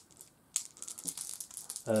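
A handful of small dice rattling and clicking together in a cupped hand, starting about half a second in.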